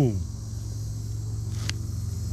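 A distant motor running with a steady low hum, with one sharp click about one and a half seconds in.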